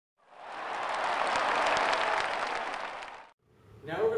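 Applause from a crowd, many quick claps, fading in and then cutting off abruptly after about three seconds.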